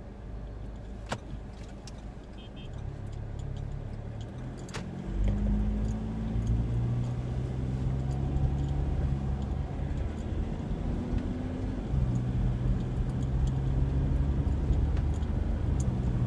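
A Ford's engine heard from inside the cabin while driving. It gets louder and rises in pitch from about five seconds in as it accelerates, falls back briefly about twelve seconds in, then climbs again.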